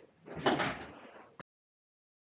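A brief household noise, a rushing swell of about a second that cuts off suddenly partway through.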